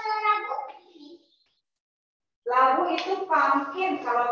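Children's voices talking over a video call, dropping to dead silence for about a second in the middle before talk resumes.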